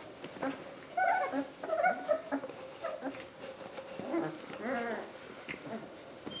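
Basset hound puppies whimpering and yipping as they play and nip at each other: several short squeaky yelps in the first couple of seconds, then one longer, wavering whine near the end.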